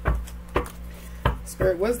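A tarot deck being shuffled by hand, cards slapping together in sharp strokes about twice a second.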